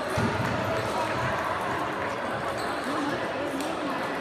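Scattered table tennis ball clicks and bounces against a murmur of voices in a sports hall.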